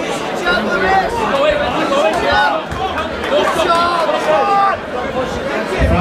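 Crowd of spectators talking and calling out, several voices overlapping.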